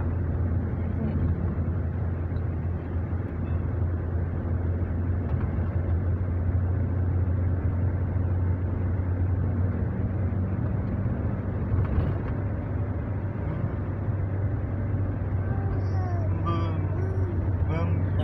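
Steady low drone of a Toyota car's engine and tyre noise heard inside the cabin while driving, with a single short click about twelve seconds in.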